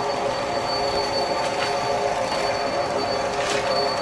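Paper straw making machine running: a steady mechanical hum made of several held tones, with a faint high whine over it.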